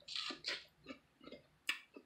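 Biting into and chewing a slice of Asian melon close to the microphone: a few bites in the first half second, then fainter chewing, with a sharp click near the end.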